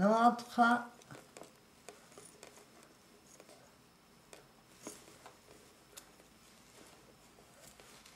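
Faint rustling of lace fabric and scattered light ticks as it is handled and its pleats are arranged around a lampshade frame, after a brief voiced sound in the first second.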